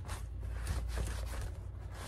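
A sponge wiping and rubbing over a leather purse, with the bag being handled: soft, irregular scuffing and rustling strokes.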